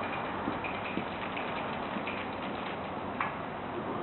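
Light, irregular ticking and clicking over a steady background hum, with one sharper click about three seconds in.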